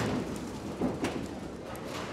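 Candlepin ball rolling down a wooden lane, a low steady rumble, with a couple of light knocks about a second in.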